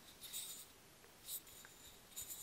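Faint rubbing and scraping of hands turning and handling a wooden kendama, heard as two short soft scuffs, the first just after the start and the second past the middle.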